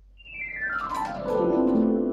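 Casio WK-240 keyboard on its "EP Pad 2" electric-piano pad tone, played as a quick downward glissando. The sweep starts just after the beginning and runs from high notes to low over about a second and a half, and the notes keep ringing and blend into a sustained wash.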